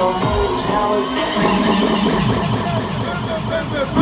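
Loud DJ music playing over a nightclub sound system, heard from within the crowd, with a run of repeated sliding bass notes in the middle.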